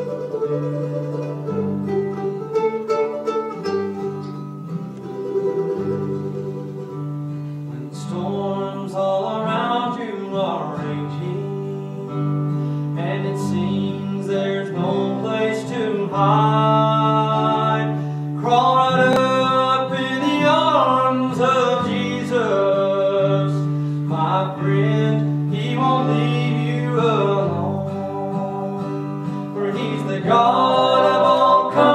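Live acoustic string music with a mandolin, plucked picking over steady low notes. About eight seconds in, a louder melody with wavering held notes comes in over it, most likely singing.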